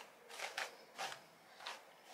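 Hairbrush stroking down a long ponytail: three faint, short swishes of bristles through hair.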